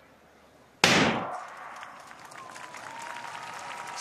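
Starting gun firing for a 200 m sprint start about a second in: one sharp crack that rings on and fades over about half a second, followed by low background noise that slowly builds.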